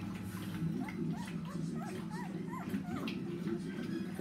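Newborn Brittany puppies squeaking and whimpering: a run of short, high, rising-and-falling squeaks, over a steady low hum.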